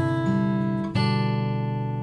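Olson SJ acoustic guitar with cedar top and Indian rosewood body: two chords struck about a second apart, each left ringing, as the bass line walks down from a C chord toward E minor seven.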